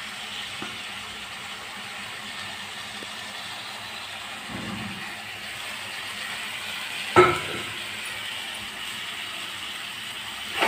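A steel utensil gives one sharp ringing metal clink against the kadai about seven seconds in, over a steady low hiss of the curry cooking on the stove.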